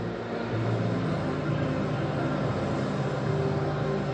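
Steady background noise of a large hall between announcements over a public-address system, with a low sustained hum whose pitch shifts a couple of times.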